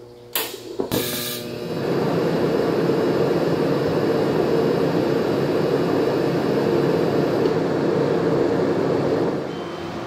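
TIG welder arc welding steel, joining a bolt fragment to a threaded rod. After two brief sharp hisses as the arc strikes, a steady buzzing hiss runs for about eight seconds and stops shortly before the end.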